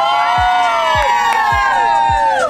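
Several people cheering together in long, held "woo" shouts that slide slightly down in pitch and die away near the end, over background music with a steady beat.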